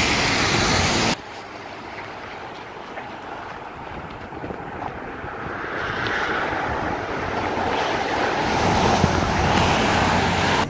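Wind rushing on a phone microphone outdoors, with street noise. Loud for about the first second, then it cuts to a quieter hiss that slowly grows louder.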